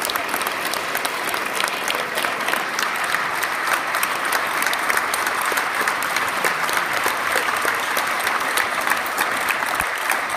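A large audience clapping in steady, sustained applause.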